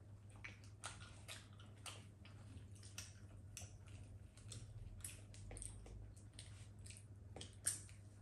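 Faint eating sounds at a dinner table: irregular light clicks of cutlery on plates, with chewing, over a low steady hum.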